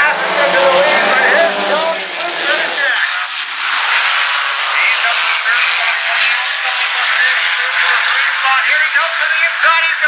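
Several sport compact race cars running on a dirt oval, their engines revving up and down through the corners. A deeper engine drone, likely from a nearby passing car, stops about three seconds in.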